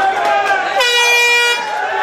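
A single horn blast, steady in pitch and lasting under a second, about a second in, over shouting from the crowd.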